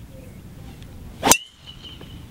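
Metal-headed driver striking a golf ball off the tee: one sharp crack just over a second in, followed by a brief high ringing tone from the clubhead.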